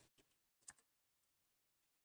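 Near silence, with a single faint computer-keyboard keystroke about two-thirds of a second in.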